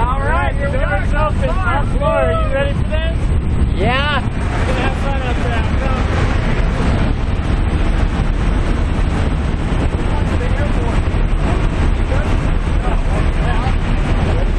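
Steady, loud noise of a jump plane's engine and propeller with wind rushing in through the open jump door. Voices shout and call out over it during the first four seconds or so.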